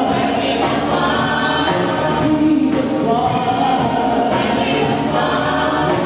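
A congregation singing a gospel praise song together, holding long notes, with music and a steady percussion beat behind the voices.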